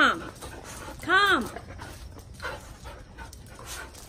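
Excited Goldendoodles whining: a short falling whine right at the start, then a louder, higher whine that rises and falls about a second in, with only faint sounds after.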